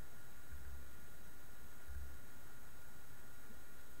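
Quiet room tone: a steady faint hiss with a thin steady high tone, and two soft low bumps about half a second and two seconds in.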